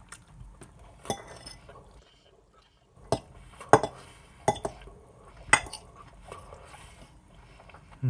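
Metal fork clinking and scraping against a dish as food is scooped up: about five sharp clinks, the loudest between three and six seconds in.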